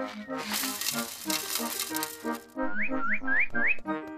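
Seed poured from a box into a tube bird feeder, a dense rattling hiss lasting about two seconds, over soft background music. Then four quick rising chirps from the cartoon birds.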